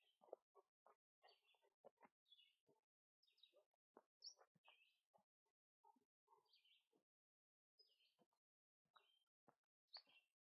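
Near silence, with faint bird chirps repeating about once a second and faint scattered taps.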